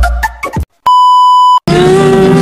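Rhythmic electronic intro music ends about half a second in; after a short silence, a single steady high beep sounds for under a second, then a slow song with long held notes begins.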